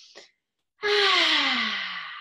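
A woman breathes in, then after a short pause lets out a long, loud, breathy sigh with her voice in it, the pitch falling steadily as it fades.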